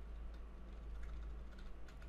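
Computer keyboard keys pressed several times, faint clicks over a low steady hum, as the text cursor is stepped back along a command line.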